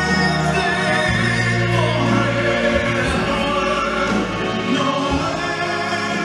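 Male soloist singing live into a microphone, backed by a choir and orchestra, with long held notes.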